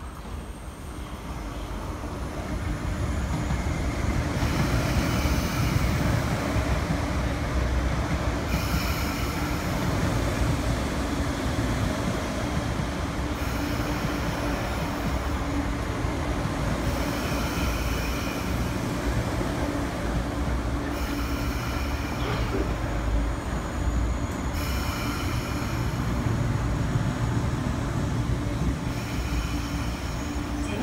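MTR East Rail Line MLR electric multiple-unit train running into the platform and slowing to a stop: a rumble of wheels and motors that builds over the first few seconds and then holds steady, with high-pitched sounds coming and going in stretches of a few seconds.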